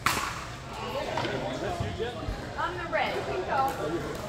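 One sharp pock of a pickleball struck by a paddle right at the start, followed by several players' voices talking, echoing in a large indoor hall.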